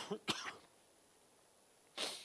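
A man's short cough at the very start, with a second brief burst just after, then quiet for most of the rest.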